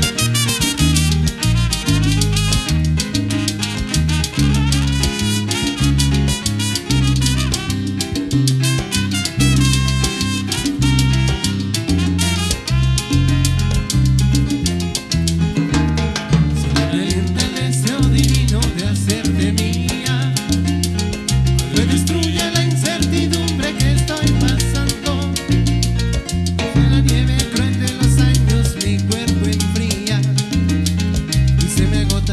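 Instrumental introduction of a tropical dance song played live by a band with a brass section of trumpets and saxophone, keyboard, bass and Latin percussion, over a steady dance beat.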